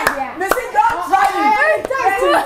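Women's voices talking and exclaiming excitedly, with two sharp hand claps, one about a quarter of the way in and one near the end.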